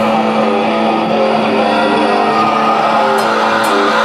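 Rock band playing live: electric guitar, electric bass and drums together, loud and steady.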